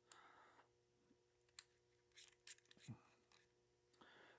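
Near silence with a few faint, short clicks and taps near the middle: a TIG welding torch handled as a freshly ground tungsten electrode is fitted into it.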